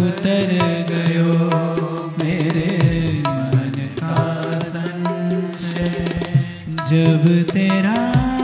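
A man singing a devotional chant-like song into a microphone, over a steady held drone note and a regular percussion beat.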